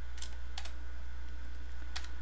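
A few faint keystrokes on a computer keyboard as a command is typed in and confirmed, over a steady low hum.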